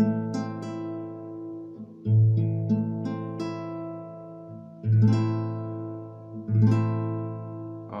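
Nylon-string classical guitar sounding an A minor chord from the open fifth (A) string down. The bass note comes first, then the higher strings are picked one after another so the chord rings out. The pattern is repeated several times.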